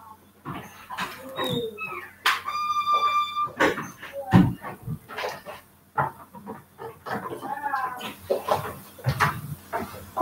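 A dog whining in high, drawn-out tones, one held for about a second and a half, mixed with sharp clicks and knocks.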